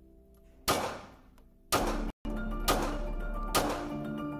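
Four revolver shots, evenly spaced about a second apart, each a sharp crack with a short ringing tail, over a music bed of sustained notes.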